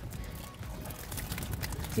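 Wind rumbling on the microphone, with scattered light clicks and rattles from hands and a tool working a plastic stone crab trap.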